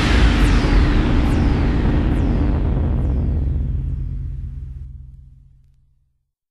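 Closing bars of an electronic dance track: a noisy wash over a held low bass tone, with a falling high zap about once a second, fading out to silence near the end.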